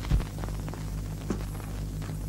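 A steady low hum with a faint pulsing to it, with one dull thump just after the start.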